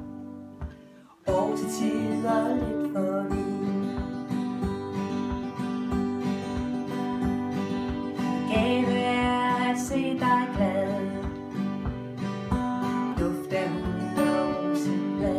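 Two steel-string acoustic guitars strumming a song accompaniment with no singing over it. The playing dies away almost to silence in the first second, then the strumming starts again suddenly and keeps a steady rhythm.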